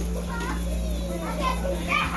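Children's voices chattering and playing, not close enough to make out words, over a steady low hum.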